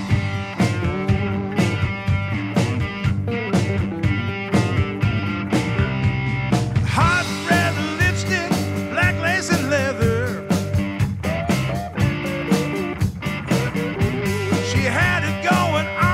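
Blues-rock song in an instrumental stretch between sung lines: electric guitar lead bending notes over bass and a steady drum beat.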